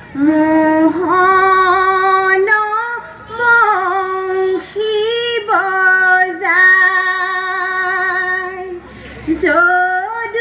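A group of women singing Assamese aayati naam, a devotional chant, in unison, holding long drawn-out notes that slide between pitches, with short breaks between phrases.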